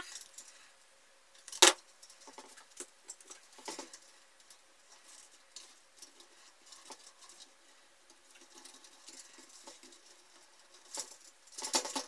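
Faint handling noises of thin electrical wires being twisted together by hand: scattered soft ticks and rustles, with one sharp click a little under two seconds in and a few more clicks near the end.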